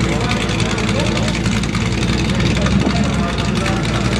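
Chevy S10 pickups with swapped-in 350 small-block V8s idling at the start line, a steady deep engine rumble.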